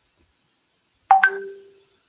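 Electronic notification chime from video-call software, about a second in: two quick higher notes, then a lower note held for about half a second, signalling the disconnected speaker rejoining the call.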